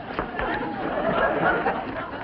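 Studio audience laughing: many voices overlapping.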